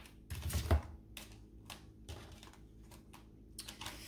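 Tarot cards being handled on a tabletop: a quick run of sharp card clicks and taps in the first second, then faint scattered ticks as cards are sorted and drawn.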